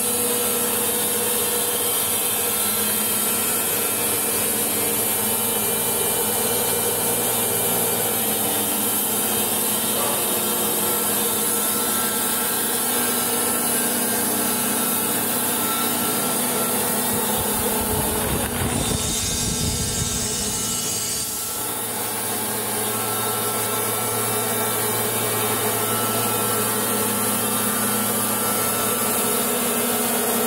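Logosol B751 Pro band sawmill running steadily, its blade cutting lengthwise through a large spruce log. The sound shifts for a few seconds about two-thirds of the way through, with less hiss and more low rumble.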